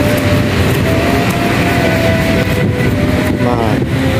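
A steady low mechanical rumble, with voices in the background and a voice rising briefly near the end.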